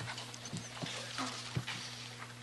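Quiet meeting-room background with a steady low electrical hum and a few light knocks and rustles, about three within two seconds. These are the sounds of people settling in and handling things at the microphones before they speak.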